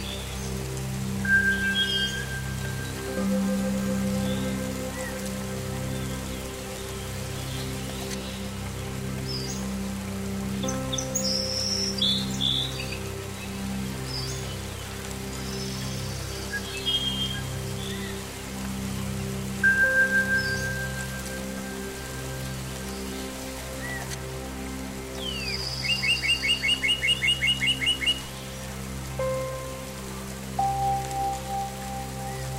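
Slow ambient meditation music of long held tones and drones, with birdsong and soft rain mixed in. Short bird chirps come and go throughout, and a quick trill of about a dozen rapid notes sounds near the end.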